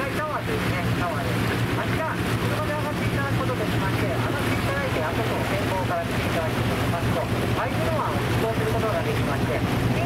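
A sightseeing cruise boat's engine running with a steady low drone, under wind noise on the microphone.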